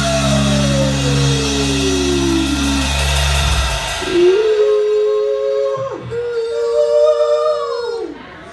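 Live rock band with electric guitars, bass and drums ending a song: a full chord rings with one note sliding down in pitch, and the band cuts off about three and a half seconds in. Held, slightly wavering high tones then ring on for a few seconds.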